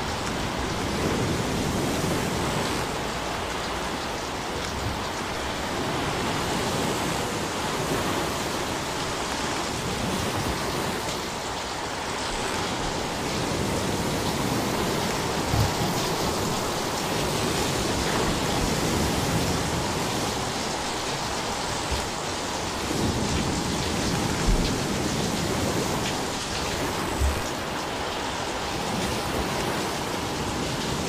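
Small sea waves breaking and washing up a sandy, pebbly shore: a steady hiss of surf that swells and eases slowly. A few brief low thumps come in the second half.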